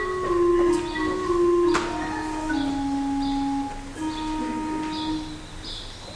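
Church organ playing slow, held chords, the notes changing in steps, with a sharp knock just under two seconds in.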